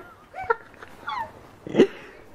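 A household pet giving short, high whining calls that bend in pitch, several in a row, with a louder sharp sound near the end.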